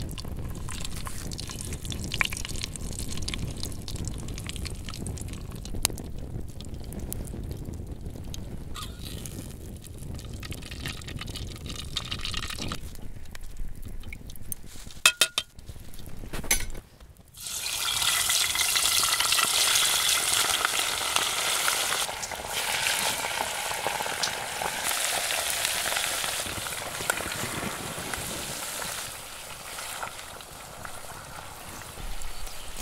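Ghee heating in an aluminium pot over a wood fire: a low rumble with scattered crackles and clicks. About seventeen seconds in, after a brief drop, a loud steady sizzle starts as lamb pieces deep-fry in the hot ghee.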